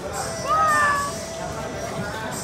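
A single short, high-pitched call about half a second in that rises and then holds for about half a second, over background chatter and a steady tone.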